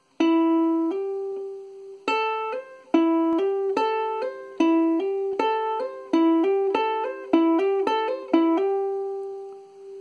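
Ukulele A string plucked and then hammered on at the third fret with the third finger, repeated about ten times: each pluck is followed by a second, higher note that sounds without a new pluck. The first pair is slow and the rest come quicker, and the last note rings out and fades near the end.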